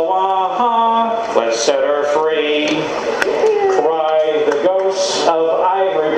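A man singing a folk song's chorus, holding long, steady notes between shorter words.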